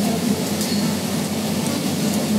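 Steady café room noise: a continuous low hum of ventilation and general restaurant background.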